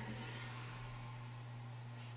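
Quiet room tone: a faint hiss over a steady low hum.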